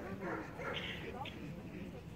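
A dog barks briefly about a second in, over people talking.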